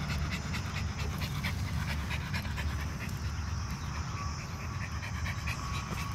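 A small terrier-type dog panting rapidly, a quick run of short breaths that eases somewhat about halfway through, over a steady low rumble.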